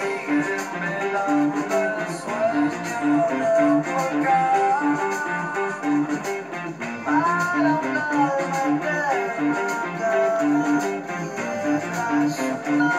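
Electric guitar, an ESP LTD EX-50 run through a Zoom 505 II multi-effects pedal, playing a rock song with a steady repeating low riff and melody lines that slide in pitch above it.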